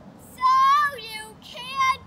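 A child's high-pitched voice singing out two long held notes: the first about half a second in, a shorter second one near the end.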